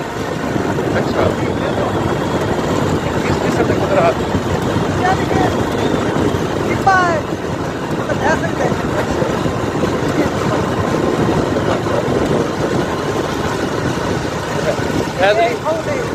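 Motorcycle engine running steadily while riding over a desert track, with wind rushing over the microphone and a few brief voices.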